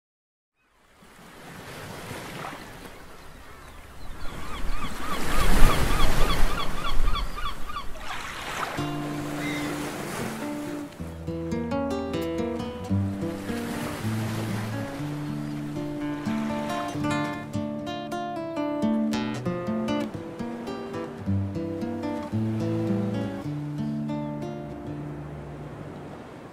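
Surf washing up on a sandy beach, swelling over the first several seconds. From about nine seconds in, an acoustic guitar picks a slow arpeggiated intro over faint surf.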